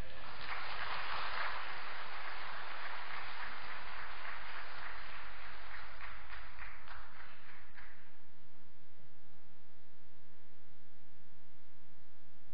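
Audience applauding, dense at first, then thinning into scattered separate claps and dying away after about eight seconds. A steady electrical hum remains underneath.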